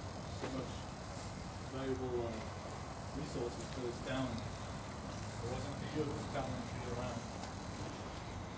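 Faint, muffled voices of people talking at a distance, over a low rumble. A steady high-pitched electronic whine runs under them, drops out briefly about two seconds in and stops near the end.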